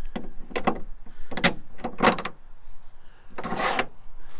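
Tie-down cleat being fitted into and slid along a Toyota Tacoma's bed-side deck rail channel: a few short clicks and rattles, then a longer scrape near the end.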